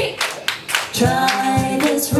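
Live singing over a steady hand-clap beat, about two claps a second; a sustained sung note comes in about a second in.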